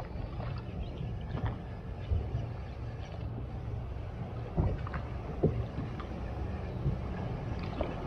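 Small open fishing boat rocking on choppy water: water slapping and sloshing against the hull under a steady low rumble, with a few light knocks about four and a half and five and a half seconds in.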